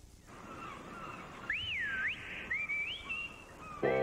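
Whistling in sweeping glides that swing up and down in pitch, over a faint outdoor background. Music starts just before the end.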